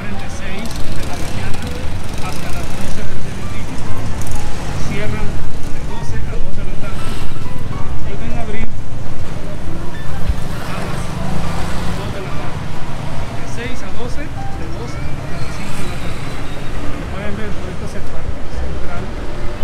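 Busy town-square street ambience: traffic running steadily, people talking and music playing.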